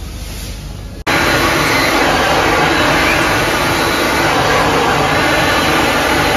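Handheld hair dryer blowing close by: a loud, steady rush of air that cuts in abruptly about a second in, during a blow-dry with a round brush.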